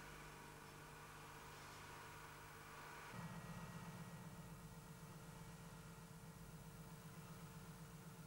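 Near silence with the faint, steady hum of the Massey Ferguson 2720 tractor's diesel engine. About three seconds in, the hum steps up in pitch and takes on a slight even pulse.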